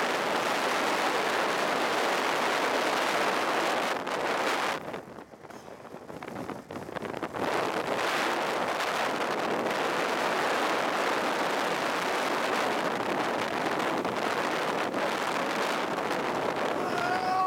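Wind rushing over the microphone from a car moving at road speed, with the camera at an open window. The rush drops away for a few seconds about five seconds in, then comes back.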